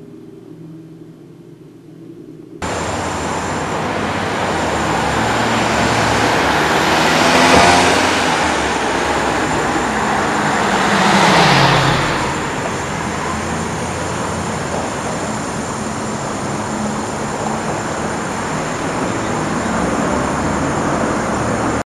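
Street traffic noise: vehicles passing on a road, with one car swelling past about seven seconds in and another, its pitch falling as it goes by, about four seconds later. The noise starts suddenly a few seconds in and cuts off abruptly near the end.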